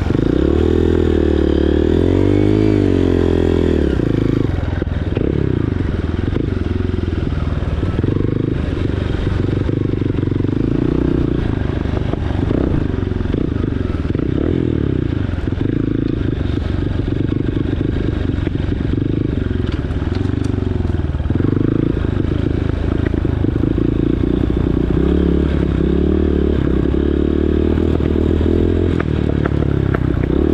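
Dirt bike engine running close to the microphone, its revs rising and falling continually with the throttle while riding along a trail.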